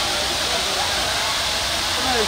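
Dandelion-style water fountains spraying: a steady hiss of water jets and falling spray, with faint voices of people in the background.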